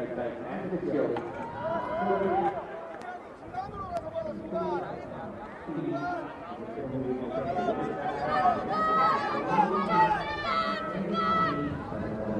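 People's voices talking and calling out over background chatter, loudest in the last few seconds.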